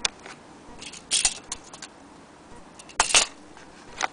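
Handling noises from a vintage gramophone needle sharpener set in its card box: a few light clicks and two short, loud scrapes, one about a second in and one at about three seconds.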